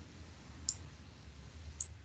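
Two faint, sharp clicks about a second apart over a low, steady background hum.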